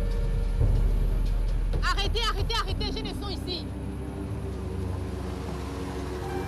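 A vehicle's engine idling with a low, steady rumble. From about two seconds in, a person's voice comes in a quick run of short, high-pitched syllables for a second and a half.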